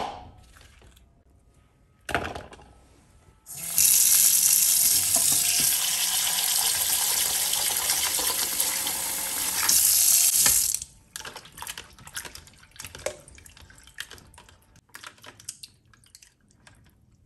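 Two knocks in the first couple of seconds, then a kitchen tap runs hard into a ceramic bowl in the sink for about seven seconds and shuts off abruptly. Small splashes and clicks follow as hands wash tomatoes in the water.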